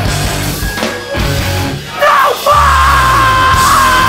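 Hardcore punk band playing live at full volume with distorted guitars, bass and drums. About a second in the band thins out for a moment, then comes back in hard under a long, high, held yell.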